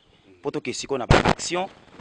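A man's voice speaking in short bursts, with one loud sudden blast of sound about a second in, the loudest thing here.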